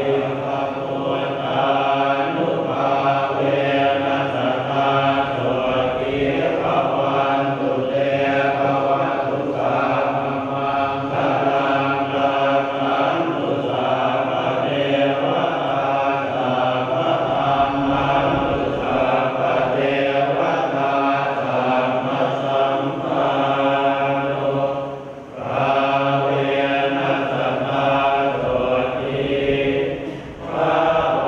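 Group of Theravada Buddhist monks chanting in Pali in unison, a steady, continuous recitation that breaks off briefly for breath about 25 seconds in.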